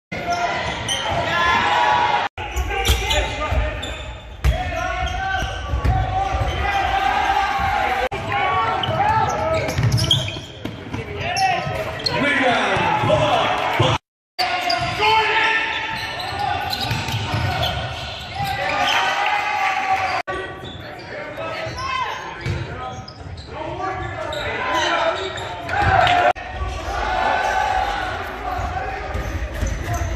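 Live game sound in a high school gymnasium: a basketball bouncing on the hardwood court, with crowd and players' voices echoing in the large hall. The sound drops out briefly a few times, about 2, 14 and 20 seconds in.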